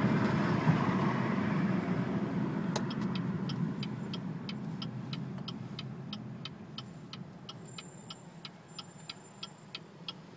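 Car and traffic rumble in city driving, fading steadily over the second half. From about three seconds in, a fast, even ticking joins it, about four ticks a second.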